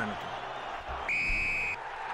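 A referee's whistle, one short steady blast about a second in, over a crowd, signalling that the try is awarded.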